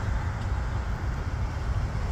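Road traffic: cars driving along a multi-lane road, with a low rumble of wind on the microphone.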